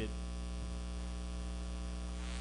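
Steady electrical mains hum: a constant low buzz with many evenly spaced overtones, with nothing else standing out above it.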